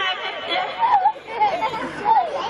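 A man talking into a microphone, his voice carried over loudspeakers.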